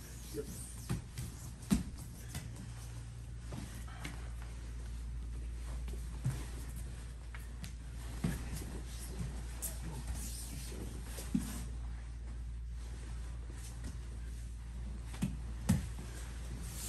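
Two jiu-jitsu players grappling on foam mats: gi cloth rustling and scuffing, with scattered thumps of hands, feet and bodies landing on the mat, the sharpest about two seconds in, around eleven seconds and near the end. A steady low hum lies underneath.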